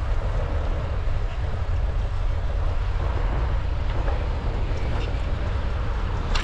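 Wind buffeting the microphone of a bike-mounted GoPro action camera, a steady low rumble, with road and tyre noise from the bicycle rolling along the street.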